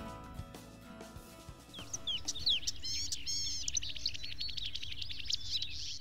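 Background music fading away, then birds chirping and singing: many short sliding calls and a rapid trill, starting about two seconds in.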